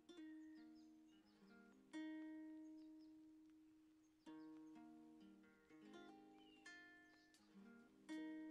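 Faint background music of plucked guitar notes, each struck chord ringing out and slowly fading, with new chords about two seconds in and again a little after four seconds.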